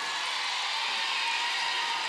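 Audience applauding and cheering in a steady wash of noise.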